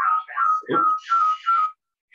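Audio feedback: a high whistling tone at one fixed pitch rings out in about five short pulses, then cuts off suddenly near the end.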